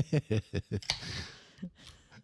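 Two people laughing in short bursts, then a sharp click about a second in followed by a short hiss that fades away.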